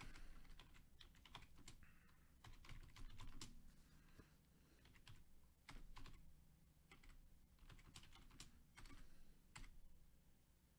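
Faint, irregular clicks of typing on a computer keyboard, against near silence.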